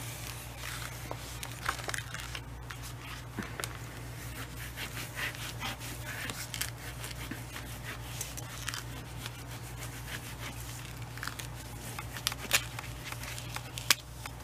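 Backing paper crinkling as it is slowly peeled off a Scotch self-sealing laminating sheet, with a smoothing tool scraping over the plastic to press it down against air bubbles. Soft, irregular rustling with small clicks, and a sharper click near the end, over a low steady hum.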